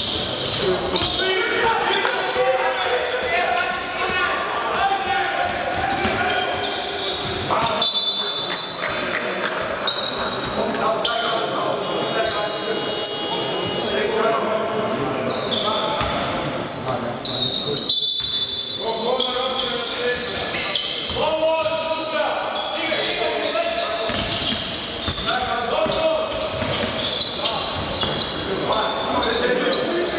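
Basketball game on a hardwood court: a ball bouncing as it is dribbled, under voices of players and coaches calling out, echoing in a large sports hall.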